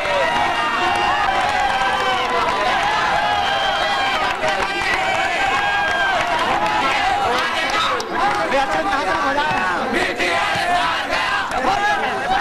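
Crowd of volleyball spectators and players shouting and cheering, many voices overlapping at a steady level.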